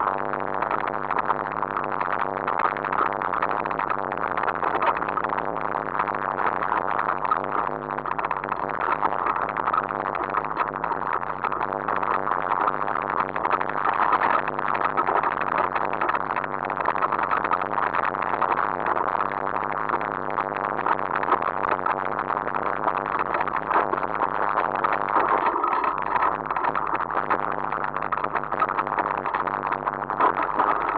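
Mountain bike descending a rocky dirt trail, heard from a camera mounted on the bike or rider: a continuous rough rumble and rattle of tyres on loose stones and the bike shaking over the ground.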